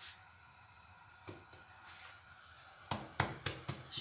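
Quiet kitchen with a faint steady hiss, then a quick run of sharp knocks and taps about three seconds in, from things being handled on the counter.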